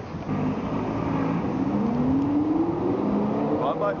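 A car engine accelerating along the street, its pitch rising steadily over about two and a half seconds, over a background of traffic noise.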